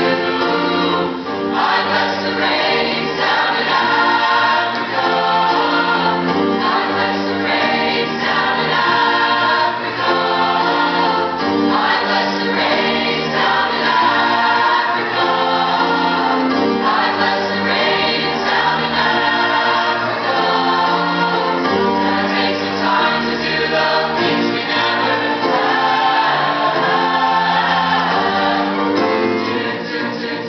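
Mixed choir singing an arrangement of an African folk song in full harmony, with many voices moving together.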